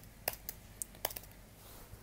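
Computer keyboard being typed on: a handful of separate, irregularly spaced keystroke clicks.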